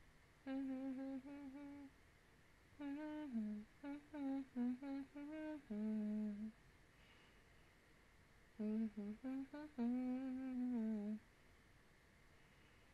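A woman humming a tune with her mouth closed, in short phrases of held notes with brief gaps between them and a longer pause in the middle.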